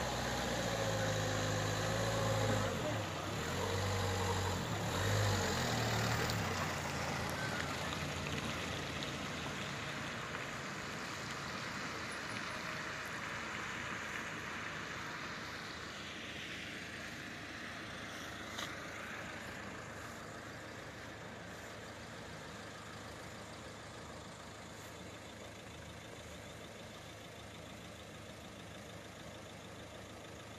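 Car engines running close by, loudest in the first six or seven seconds with a shifting low hum, then a steady hiss of traffic on the wet road that slowly fades. One short click about eighteen seconds in.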